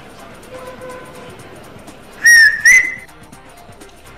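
Two short, loud, high whistle notes in quick succession about halfway through, the second rising slightly at its start, over faint background music.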